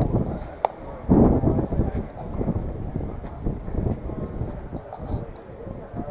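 Indistinct voices of people talking, too unclear to be written down as words, with a brief click a little over half a second in.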